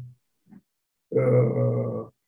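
A man's voice: a brief pause, then a drawn-out 'uhh' held at one steady pitch for about a second.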